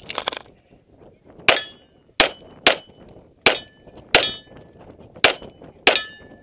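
Pistol shots fired in a quick string, seven sharp cracks about half a second to a second apart, several followed by the brief ringing of steel targets being hit. A short loud clatter comes right at the start.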